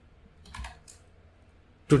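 A short run of keystrokes on a computer keyboard about half a second in, then one more a moment later.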